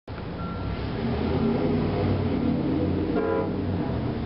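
A vehicle engine running with a steady low rumble, and a brief horn toot a little after three seconds in.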